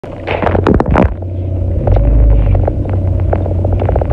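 Low, steady rumble of a car on the road, heard from inside the cabin, with a short burst of knocks and rustling in the first second and a few light clicks after.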